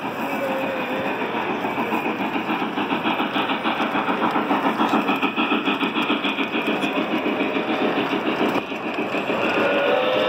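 Model freight train cars rolling past close by on the layout's track, their wheels making a fast, even clatter of about five beats a second that drops off briefly near the end.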